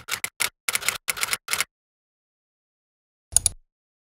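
Typewriter-style keystroke sound effect as on-screen text types out letter by letter: a quick run of sharp clicks, about six a second, stopping after about a second and a half. A final double click with a low thump comes about three and a half seconds in.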